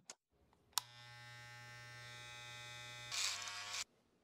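Electric hair clippers click on and run with a steady buzz. Near the end they get louder and rougher for under a second as they cut into hair, then stop abruptly.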